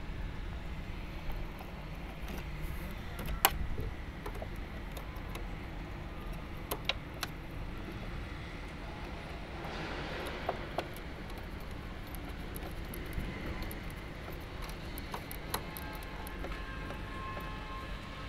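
Small sharp clicks and a brief rustle about ten seconds in, from wires and terminal connectors being handled in an electrical control box, over a steady low background rumble.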